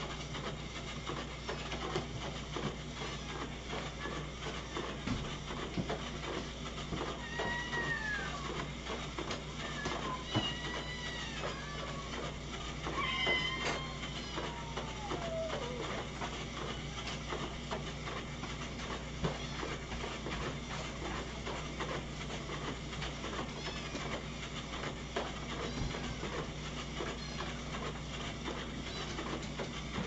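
Cats meowing: a handful of short calls that rise and fall, bunched in the middle, the last one falling away. Underneath runs a steady low hum with a few light clicks.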